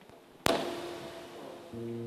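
A single sharp strike about half a second in, ringing on with a tone, then held instrument notes near the end as a Turkish folk band's instruments start to play.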